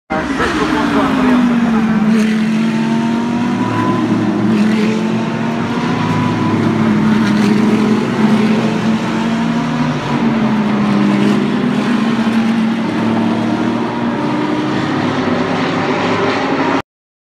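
A pack of GT race cars running past at racing speed, several engine notes overlapping. The pitch dips about a second in and again around ten seconds, then climbs back.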